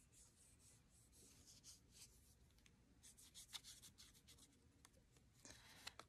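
Near silence with faint, soft scratching strokes of a watercolour paintbrush on paper, scattered through the middle.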